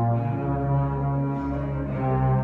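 Live symphony orchestra playing, with strings over a deep held low note that comes in about half a second in.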